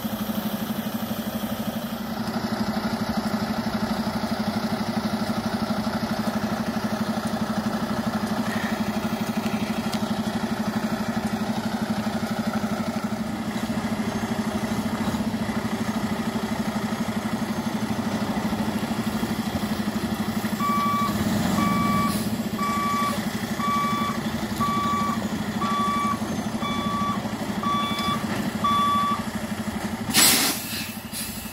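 A heavy truck's diesel engine running steadily while it maneuvers the Hammar side-loader. About two-thirds of the way through, its backup alarm starts beeping, about once a second, nine beeps in all.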